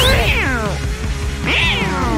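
Cartoon kitten meowing twice, rising then falling in pitch, one call at the start and one near the end, over background music.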